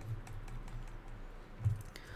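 Faint clicking at a computer over a low steady hum, with a soft low thump near the end.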